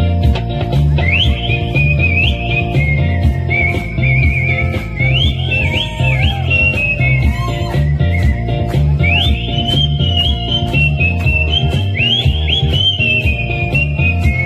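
Melodic whistling into a microphone over a pop backing track with a steady beat. The whistled tune comes in about a second in, high and gliding between notes, and breaks off briefly just past the middle before going on.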